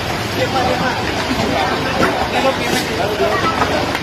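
A crowd of people talking at once, many overlapping voices with no single speaker standing out, over a steady low rumble of idling vehicles.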